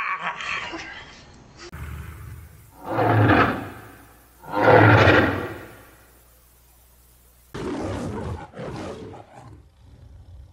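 A man laughing, then two loud roars a couple of seconds apart in the manner of the MGM lion logo, and after a cut a shorter, rougher roar near the end.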